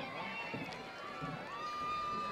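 Stadium crowd: many distant voices chattering and calling out at once, with a high note held steadily from about one and a half seconds in.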